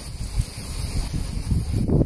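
Low, uneven rumbling noise on the microphone, like wind or breath across it, with no clear pitched sound.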